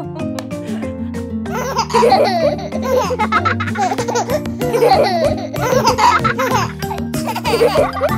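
Cheerful children's-song backing music with steady sustained notes, and giggling and laughter over it in several bouts from about a second and a half in.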